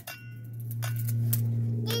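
A helicopter flying overhead: a steady low drone that grows louder over the first second, then holds.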